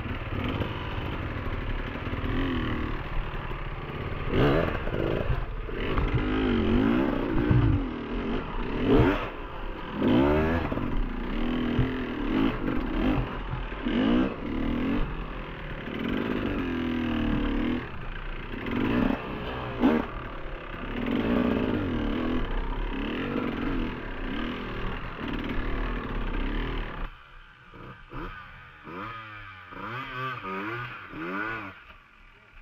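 Enduro dirt bike engine revving up and down in short bursts of throttle while picking over rough rocky ground, with occasional knocks and clatter from the bike. Near the end the engine sound drops away and becomes quieter.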